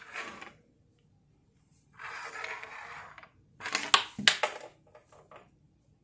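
Plastic mini football helmet sliding across a wooden tabletop, then several sharp clacks as it knocks into other plastic mini helmets, with a few lighter ticks after.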